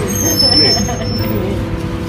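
Steady rumble and hum of a commercial kitchen's ventilation and equipment. A person speaks briefly over it in the first second or so.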